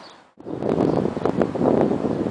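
Wind buffeting the microphone: a loud, rough rumble with irregular knocks. It cuts in abruptly after a brief drop to near silence just under half a second in.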